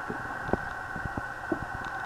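A few faint clicks and knocks from the plastic lamp housing and wires being handled, over a steady high-pitched hum.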